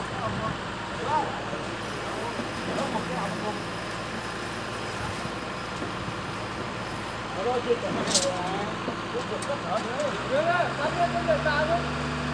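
Engine of a concrete pump running steadily on a building site, under men's shouted calls. A brief hiss comes just after eight seconds in, and a steadier, deeper engine note sets in about ten seconds in.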